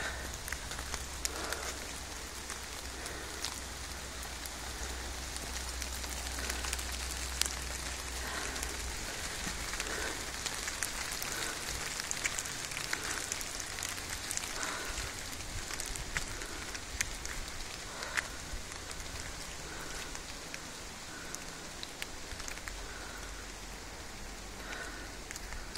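Steady rain falling on rainforest foliage and leaf litter, with many scattered sharp ticks of individual drops.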